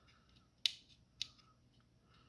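Two short, sharp clicks, a little over half a second apart, with a few faint ticks, from the controls of a Behringer 112 Dual VCO Eurorack module being worked by hand.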